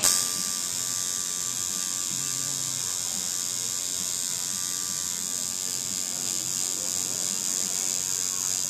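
Coil tattoo machine buzzing steadily as the needle works into skin. It cuts in suddenly at the start and holds an even, high buzz.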